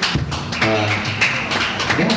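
Live band playing: electric guitars, bass guitar and drums, with sustained notes over a steady bass and regular drum hits, recorded onto cassette.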